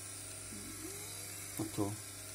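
A steady low electrical hum, with a man's brief spoken words near the end.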